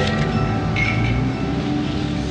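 Sustained drone from an electronic soundscape score: many steady tones held together over a low rumble, with a brief higher tone about a second in.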